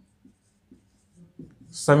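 Marker pen writing on a whiteboard: a few faint, short strokes. A man starts speaking near the end.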